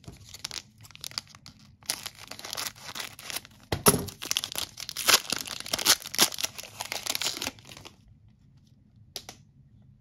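Foil wrapper of a 2022 Panini Capstone baseball card pack being ripped open and crinkled by hand, with the sharpest rip about four seconds in. The crinkling stops a couple of seconds before the end, leaving only a single small click.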